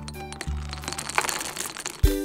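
Sticky, crackling squelches of thick green slime soap being lifted and stretched on a wooden stick in a glass bowl, with many small ticks and crackles. Faint background music plays under it, with a low note about half a second in.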